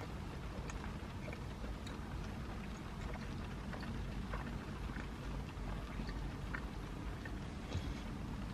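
Rain pattering on a car's roof and windows, heard from inside the cabin: a steady soft hiss with scattered light ticks of drops.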